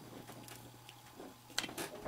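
Faint, steady low electrical hum, with two small clicks near the end as test-lead clips are handled.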